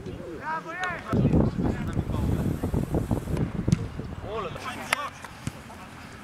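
Football players shouting short calls to each other on the pitch, with wind buffeting the microphone in a loud low rumble for a few seconds. A couple of sharp knocks come about five seconds in.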